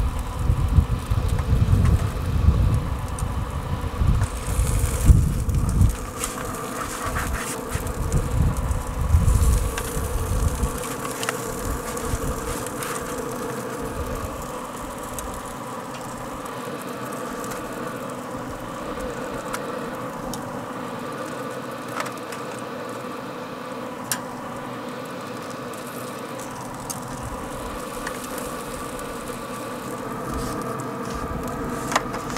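Steady hum of a Traeger Pro Series 34 pellet grill's fan running, with a low rumble during the first ten seconds and a few clicks of metal tongs.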